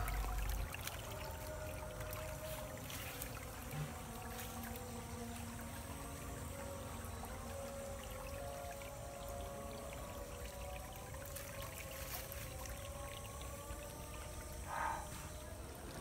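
Soft background music over a steady trickle of spring water running along a small channel.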